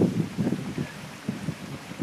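Wind buffeting the microphone on a moving boat: irregular low rumbling gusts, the strongest at the very start and about half a second in, over a faint steady hiss.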